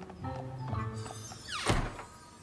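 Cartoon background music with light hoof taps, then a quick falling whoosh ending in a loud thunk near the end as the restaurant door slams shut.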